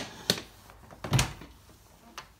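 Two thuds about a second apart, the second louder: a wooden stable stall door and its latch being handled.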